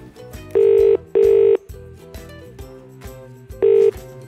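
Telephone ringing tone heard over the line: the British double ring, two short steady tones in quick succession, then the next ring beginning about two seconds later, as the call rings unanswered.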